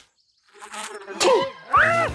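Cartoon bee buzzing after a brief silence, then a sudden sharp hit and a character's high, rising yelp near the end.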